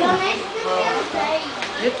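Children's voices: overlapping chatter, with a child saying a word near the end.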